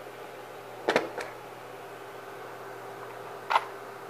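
Steady low electrical hum over a workbench, broken twice by short clicks or clatters of small objects being handled: once about a second in and again near the end.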